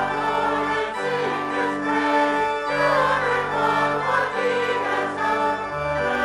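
A hymn sung to church organ accompaniment: voices over sustained organ chords with held bass notes.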